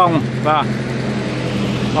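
A steady low hum from a running motor, with a voice speaking briefly at the start and again about half a second in.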